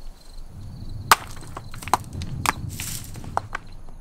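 Loose rocks knocked off a basalt cliff clattering down the rock face: a few sharp, separate knocks spread over a couple of seconds over a low rumble.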